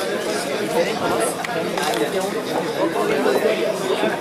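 A room full of people talking at once: steady overlapping chatter with no single voice standing out.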